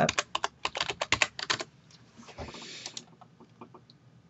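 Computer keyboard typing: a quick run of keystrokes lasting about a second and a half as a password is entered, then a few scattered, quieter clicks.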